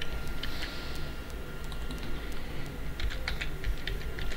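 Computer keyboard being typed on: a few keystrokes near the start, then a quick run of keystrokes about three seconds in.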